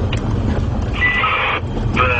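Car engine and road noise heard from inside the moving car's cabin: a steady low rumble, with a short burst of higher sound about a second in.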